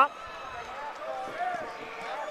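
Indistinct voices in the background, fainter than the ringside commentary.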